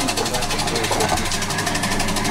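A small engine or motor running steadily, with a fast, even ticking.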